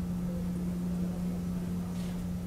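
A steady low hum that does not change, over faint room noise, with no speech.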